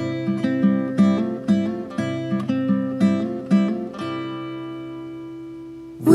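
Acoustic guitar picked alone, about two plucked notes or chords a second. From about four seconds in, the last chord is left to ring and fade away.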